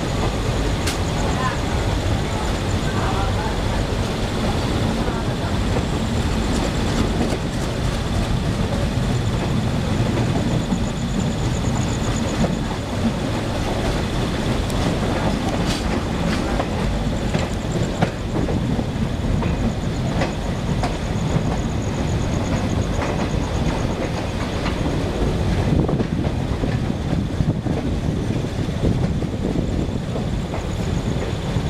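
Passenger train coaches running at low speed over pointwork and crossovers: a steady wheel-on-rail rumble with irregular clicks and knocks as the wheels cross rail joints and points. Heard from an open coach doorway.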